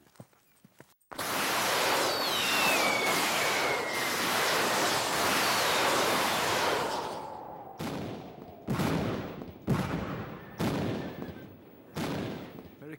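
Congreve rockets fired in a salvo: a sudden start about a second in, then a long rushing hiss with a falling whistle as the rockets fly. Four sharp bangs follow near the end.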